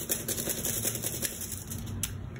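Washable felt-tip marker scribbled back and forth on crumpled aluminium foil, a steady rapid scratching made of many fast little ticks, laying down ink to be used as watercolor paint.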